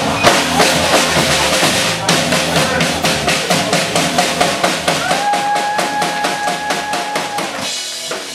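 Drum solo on a full rock drum kit: fast, dense strokes across snare, toms and kick drum, growing quieter near the end. A held note sounds over the drums from about five seconds in.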